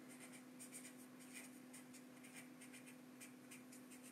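Faint, irregular scratching strokes of handwriting, a pen or marker drawn across a writing surface, over a steady low hum.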